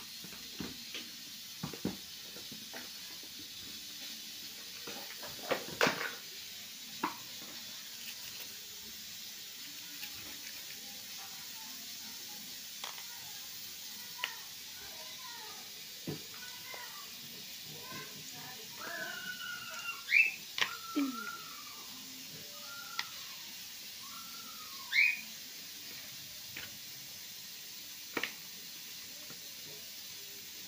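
Roasted peanuts being shelled by hand: scattered light clicks and taps as nuts are picked from papery skins and dropped into a ceramic bowl. The loudest clicks come about six seconds in and again near twenty and twenty-five seconds.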